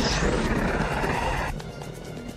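Film soundtrack: score music under a loud rushing noise effect that cuts off suddenly about one and a half seconds in.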